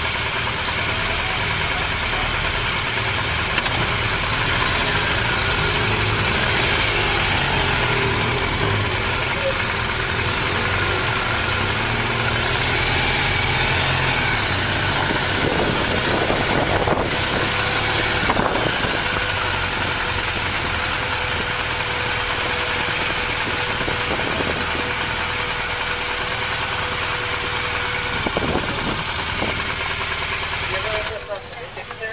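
Police motorcycle engine running steadily as the bike is ridden, with continuous engine and road noise.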